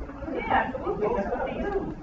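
Indistinct talking: a person's voice speaking, with no clear words.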